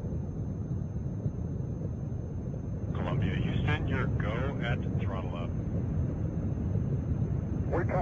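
Steady low rumble of the Space Shuttle's solid rocket boosters and main engines during ascent. An indistinct voice, likely radio chatter, comes in about three seconds in for a couple of seconds.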